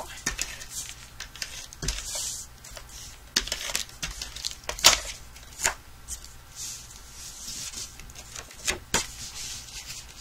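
Paper and cardstock being handled on a desk: rustling and sliding, with several sharp taps and clicks as card pieces are pressed down and set in place.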